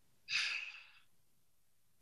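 A man's single short audible breath, about half a second long, with no voice in it.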